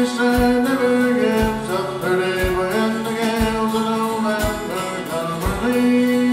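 Live band music: acoustic guitars and a held melody line over a steady drum beat, with a bass-drum hit about once a second.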